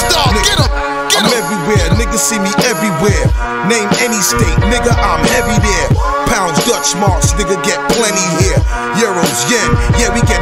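Hip-hop track: a beat with deep bass hits about once a second and sustained melodic tones, with a rapped vocal over it.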